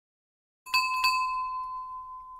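A small bell-like chime struck twice in quick succession about a second in, its clear tone ringing on and fading slowly.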